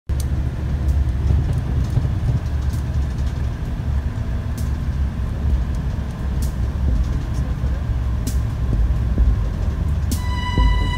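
Steady low rumble of a moving vehicle, with faint short clicks about every two seconds.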